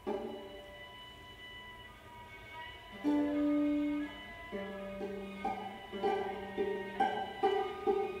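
Two violas playing a contemporary classical sonata: a soft held chord, then about three seconds in a loud sustained low note, followed by short repeated notes about two to three a second. The sound is dull and narrow, as from a radio broadcast recording.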